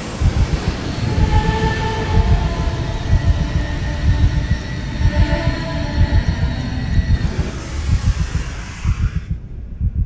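Science-fiction sound effect of a Time Lord fob watch being opened and its essence released: a loud, dense rumble that flutters in the low end, under a rushing wash of hiss with a few faint held tones. The upper hiss cuts off about nine seconds in, leaving only the low rumble.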